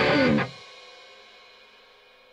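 The ending of a rock song, with electric guitar and drums. The band stops abruptly about half a second in, and a faint ringing tail fades away after it.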